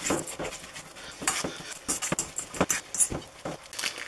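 A metal spoon scraping and clinking against a stainless steel mixing bowl as mashed banana and rolled oats are stirred together, in irregular short knocks.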